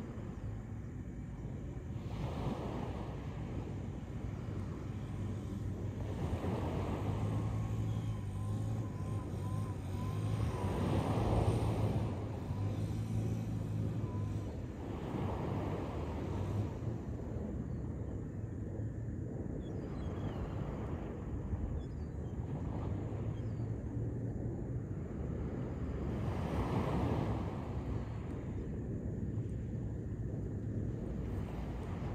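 Sea waves breaking and washing ashore, the surf swelling and fading every four or five seconds, with wind buffeting the microphone as a steady low rumble.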